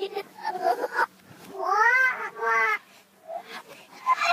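Children's voices played backwards: garbled sounds, then two drawn-out, meow-like wailing calls about two seconds in, the first rising and then falling in pitch.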